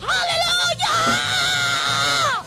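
A worshipper's praise shout: a short cry, then one long high-pitched scream held for more than a second that falls away at the end, over low church band music.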